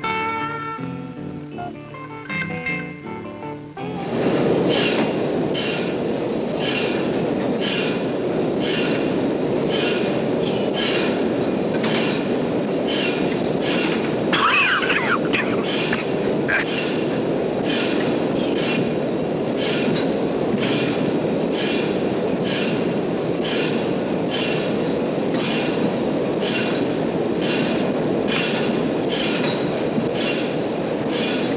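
A few seconds of guitar music, then from about four seconds in a loud, steady factory-machinery sound effect: a continuous rumble with a regular clattering beat. About halfway through, a short wavering squeal rises above it.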